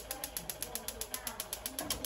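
Spark igniter of a Paloma gas hob's grill burner clicking rapidly and evenly, about eight clicks a second, as the grill burner is being lit.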